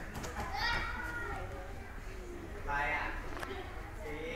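People's voices in a large hall: two short spoken or called phrases, one about half a second in and another about three seconds in, with a few faint sharp taps.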